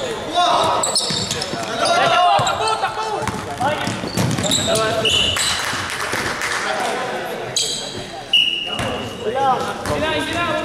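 Basketball game on a gym's hardwood court: the ball bouncing as it is dribbled, short high squeaks of sneakers on the floor, and players' voices calling out in the echoing hall.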